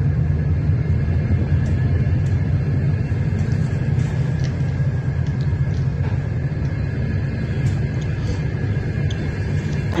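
Passenger train rolling slowly along a station platform: a steady low rumble with a few faint clicks.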